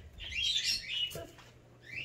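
Pet birds chirping: a run of short, high twittering calls through the first second, then quieter.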